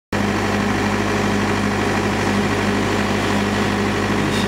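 A steady machine hum, like an engine running at constant speed, with an unchanging low drone and a faint higher tone.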